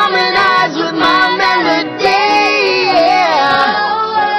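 Pop song playing: a high voice sings sliding runs without clear words over a musical backing.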